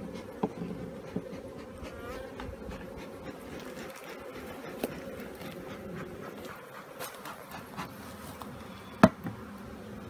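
Honeybees buzzing steadily around an open hive, with scattered light clicks and knocks and one sharp knock near the end, the loudest sound.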